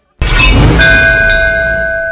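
Film title-logo sound effect: a sudden loud cinematic impact with a deep boom, followed by bell-like metallic ringing tones that come in one after another and hold, slowly fading.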